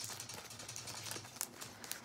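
Faint scattered light clicks and rustling of small items being handled, over a low steady hum.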